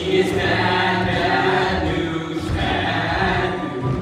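A group of boys singing a show tune together in chorus over musical accompaniment.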